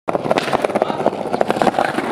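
Skateboard wheels rolling over rough pavement: a steady rumble broken by many small rapid clicks and knocks.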